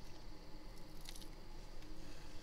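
Faint handling of a curved phone cover glass being lifted out of a laminating machine's mould, with one brief soft handling sound about a second in, over a low steady room hum.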